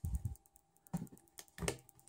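Hands pressing the sealing flap over the USB ports of an Aukey waterproof power bank into place: about four short, light clicks as the stiff cover is pushed into its seat until it closes.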